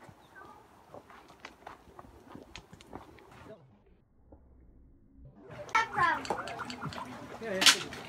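Faint footsteps on a dirt trail for the first three and a half seconds, then a short gap of silence. From a little past halfway a voice is heard, with a sharp click near the end.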